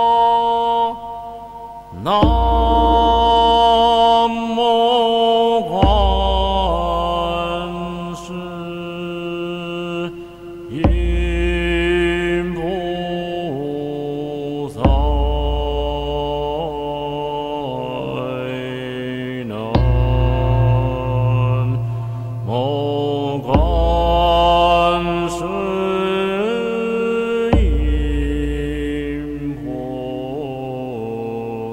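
Recorded Buddhist mantra chant: a melodic sung recitation with musical accompaniment, a new phrase beginning with a low note every four seconds or so.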